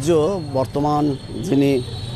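A man's voice speaking in short, broken phrases.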